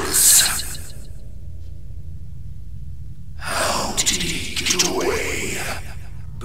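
A loud, breathy gasp from a man's voice, starting about three and a half seconds in and lasting around two seconds, over a low steady background drone. A loud noisy sound cuts off within the first second.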